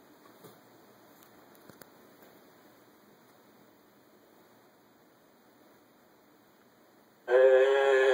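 Near silence with faint hiss and a couple of soft clicks while the stream loads, then about seven seconds in a streamed TV episode's soundtrack starts suddenly from a speaker: music with held notes.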